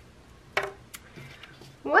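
A single sharp click or tap a little over half a second in, then faint small handling sounds in a quiet room.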